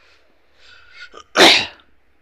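A person sneezing once: a faint intake of breath, then one short explosive burst about a second and a half in.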